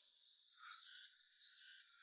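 Near silence, with faint, steady insect chirring in the background.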